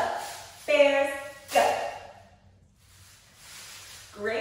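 A woman's voice shouting cheer words, three short calls within the first two seconds.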